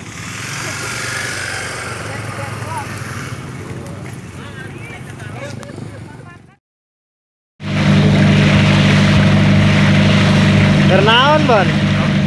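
Harbour pier bustle with people's voices, cut off by a second of silence; then a boat's engine drones loudly and steadily under the hiss of water rushing past the hull, with a man's voice near the end.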